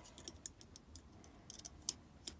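Faint, irregular small metallic clicks and ticks of a steel lock pick's tip working against the back of a brass Medeco lock cylinder, used in place of a screwdriver that is too big. The sharpest click comes near the end.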